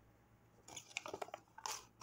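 Avocado-dyed paper pages rustling and crackling faintly as they are handled and laid down, starting after a brief quiet moment.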